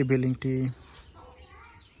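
A man's voice with two drawn-out, even-pitched syllables in the first part, then low background sound.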